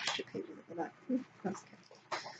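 A woman's quiet murmuring under her breath, broken into short low sounds, with a brief crisp sound at the start.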